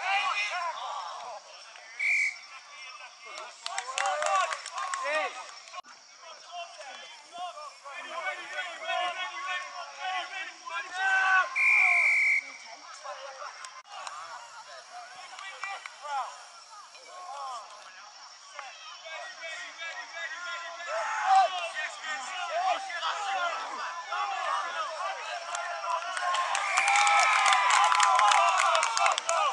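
Spectators and players calling out indistinctly during a rugby match, with two short blasts of a referee's whistle: a brief one about two seconds in and a longer one around twelve seconds in, ahead of a scrum. The shouting grows louder near the end.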